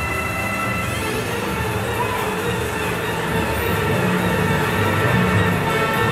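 Electronic game music from a Grand Cross Chronicle coin pusher machine playing while its bonus wheel spins, over a steady low rumble.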